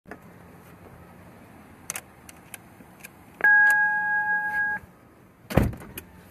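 Someone getting into a car: a few light clicks and knocks, then a steady electronic chime lasting about a second and a half, then a car door shutting with a thud near the end.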